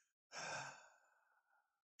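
A man's sigh of relief: one breathy exhale into a close microphone, starting a moment in and lasting under a second.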